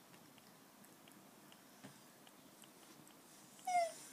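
Four-week-old puppy lapping at liquidised food in a dish: faint, scattered small licking clicks. Near the end it gives one short, high whimper that falls in pitch.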